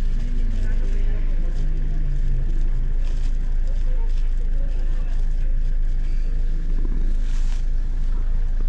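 Steady low rumble of a car cabin with the engine running, and a paper bag crackling a few times as a child tears it open and pulls a soft toy out.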